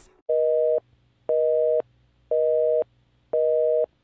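Telephone busy signal: a steady two-tone beep, half a second on and half a second off, sounding four times.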